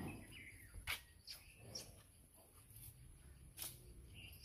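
Near silence: faint ambience with a few short faint chirps and two sharp clicks, one about a second in and one near the end.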